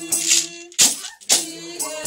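Church praise-and-worship music: held sung and instrumental notes over shaken hand percussion striking about twice a second, with a brief break near the middle.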